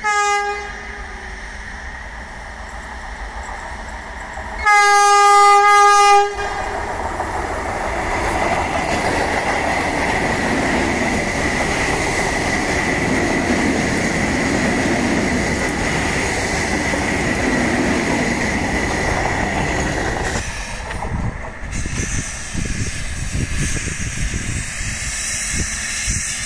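Vande Bharat Express electric train sounding its horn, a short blast at the start and a long loud blast about five seconds in. It then passes close at speed with a steady rushing wheel-and-rail noise and a thin high whine. The noise drops and turns uneven about twenty seconds in.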